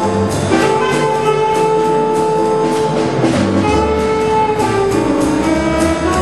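Jazz quartet of saxophone, piano, bass and drums playing, the saxophone holding long notes of the melody over the bass, with the drums keeping time on cymbals. The held note changes about three and a half seconds in.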